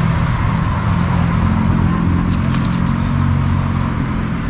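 Road traffic with a car engine running close by, a steady low hum. A few short crackles come a little past the middle.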